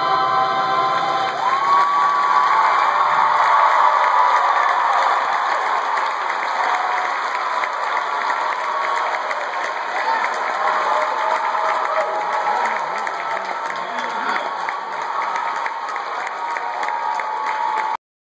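Audience applauding and cheering, with whoops and shouts over dense clapping. The last held chord of the music dies away in the first few seconds.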